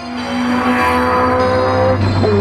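Background music over a Peugeot 106 GTI's tuned four-cylinder engine accelerating hard. The engine's pitch climbs steadily, then breaks off for a gear change at the very end.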